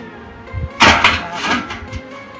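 A metal drum being set down into a hole in rocky ground, with a loud scraping knock about a second in. Background music plays underneath.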